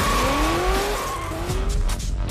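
Drift car sliding with its tyres skidding in a steady hiss, while its engine revs up in two rising pulls.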